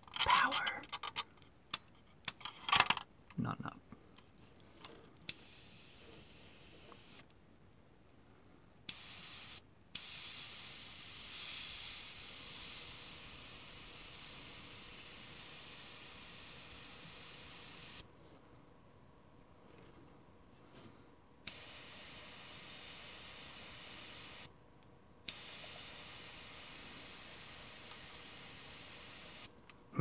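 AK Basic Line 0.3 mm gravity-feed airbrush spraying paint in bursts of steady hiss, each starting and cutting off sharply as the trigger is pressed and released. First comes a faint short burst, then a brief one, then three longer ones, the longest about eight seconds.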